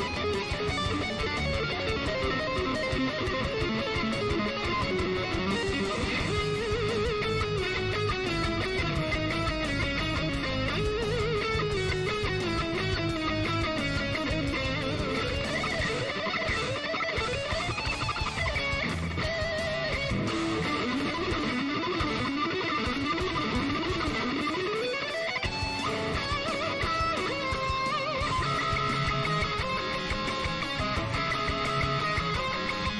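Electric guitar playing fast lead runs, with quick up-and-down arpeggio runs in the second half.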